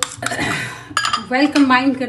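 A metal spoon scraping and clinking against a ceramic plate while mashing fried egg. A voice joins about halfway through.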